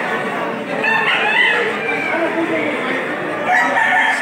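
Gamecocks crowing over the steady chatter of a crowd of men, with one clear crow about a second in.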